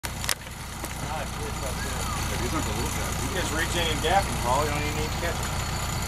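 A sportfishing boat's engine running steadily at trolling speed, a low even drone, with faint voices talking over it and a brief click near the start.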